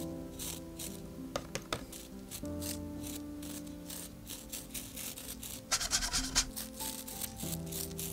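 Soft background music with sustained notes, over which a stiff-bristled brush is repeatedly flicked to spatter paint, each flick a short raspy tick. The flicks come thickest in a quick run a little past the middle.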